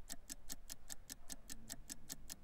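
Fast, even ticking of a countdown-clock sound effect, about seven ticks a second, marking the last seconds of a timed sale.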